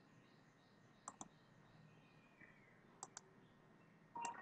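Faint computer mouse button clicks over near silence: two quick double clicks, about a second in and again about three seconds in.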